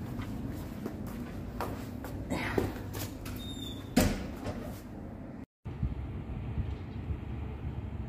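Phone microphone handling noise with a few light knocks and clicks, followed after a brief silent gap by steady faint outdoor background noise.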